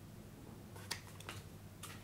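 Game cards being handled and laid down on a table: a few light clicks and taps, the sharpest about a second in and another near the end, over a low steady hum.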